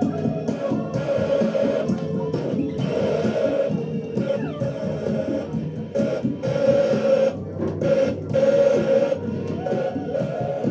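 Experimental improvised music from a vinyl record on a turntable being handled by hand, a dense mass of held tones that breaks off briefly several times and comes back in uneven stretches.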